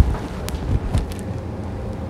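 Handling noise on a clip-on microphone as its wearer moves: a low rumbling rustle, with sharp clicks about half a second and one second in.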